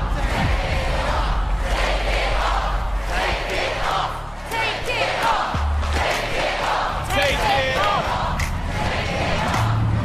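Studio audience shouting and cheering over tense build-up music with a deep bass drone. Excited high voices rise out of the crowd about seven seconds in.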